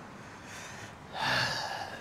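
A man's short, breathy exhale, lasting under a second and starting about a second in.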